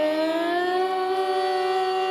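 Female Carnatic vocalist singing a raga Kamavardhini alapana: a phrase that dips at the start, rises about half a second in and settles into one long held note without ornament. A steady tambura drone sounds underneath.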